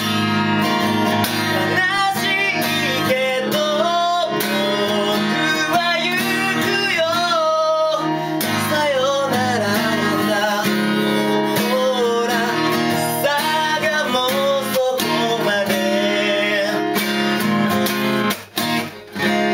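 Acoustic guitar strummed steadily under a sung melody that glides and wavers in pitch.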